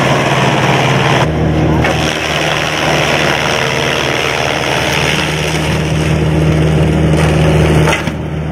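Small electric chaff cutter running with a steady motor hum as green corn stalks are fed in and chopped into animal fodder.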